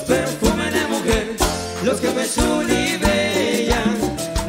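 Live cumbia band playing: a regular percussion beat and bass line under a melodic lead line.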